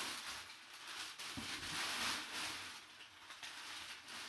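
Crumpled kraft packing paper rustling and crinkling as hands dig through it in a cardboard box, swelling and fading in waves, with one faint knock about a second and a half in.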